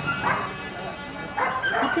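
A dog barking in short bursts, once at the very start and again as a quick run of barks in the second half.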